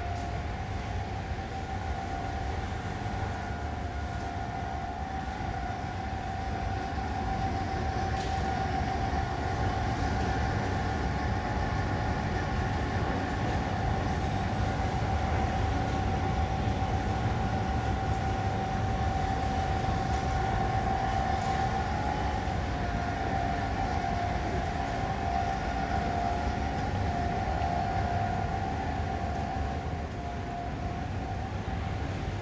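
Steady mechanical hum: one held high tone over a low rumble, unbroken throughout, dipping slightly in pitch about two-thirds of the way through.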